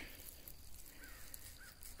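Quiet outdoor ambience with two faint, short distant bird calls, about a second in and again half a second later.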